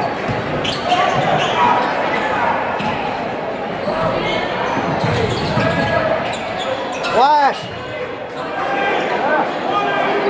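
Basketball game in a gym: steady crowd chatter with a ball bouncing on the hardwood court. A brief rising-and-falling squeal about seven seconds in is the loudest sound.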